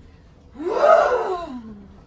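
One drawn-out vocal cry from a person, starting about half a second in: it rises in pitch, then slides down and fades away.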